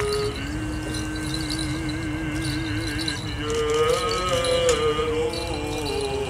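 Liturgical chanting at an Armenian Apostolic requiem service: a voice holds a long, low note with a wavering vibrato, then moves up to higher notes about halfway through.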